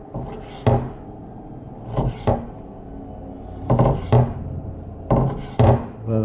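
Kitchen knife slicing a squid tube into rings on a wooden cutting board: five or six irregular knocks of the blade against the wood, a second or so apart.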